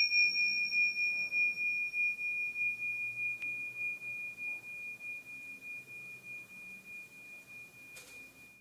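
A single struck chime ringing with a high, pure tone. It fades slowly over several seconds with an even wavering pulse in its loudness.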